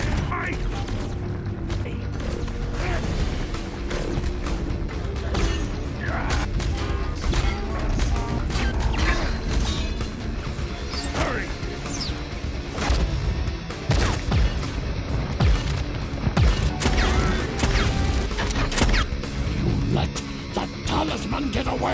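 Action-film sound effects of sci-fi weapons firing: repeated sharp shots and impacts with metallic clanking robot mechanisms, over a low rumble and a music score.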